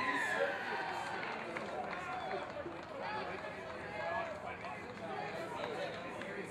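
Rugby players and onlookers shouting and calling over one another around a ruck, several voices at once, with a falling call right at the start.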